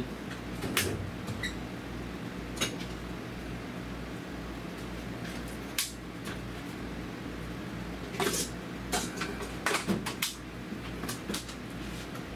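Scattered clanks and clicks of metal tools being picked up and handled, irregular and brief, over a steady low hum.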